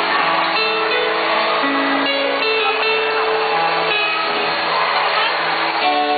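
Live band playing an instrumental introduction: a keyboard holding long sustained chords with an electric guitar, played through a PA system.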